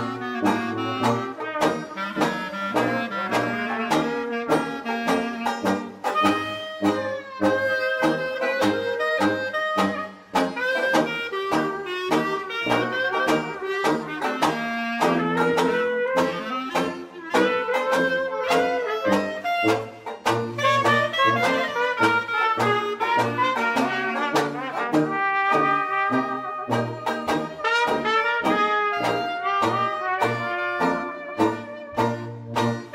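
Small traditional jazz band playing an instrumental chorus: trumpet and clarinet over a banjo strumming a steady beat and a tuba bass line.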